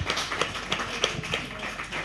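Scattered hand clapping from a small audience: a run of irregular sharp claps, several a second, with faint voices underneath.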